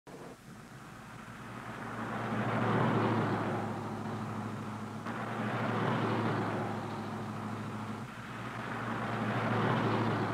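Cars driving past on a road one after another, the engine and tyre noise swelling and fading three times, loudest about three seconds in.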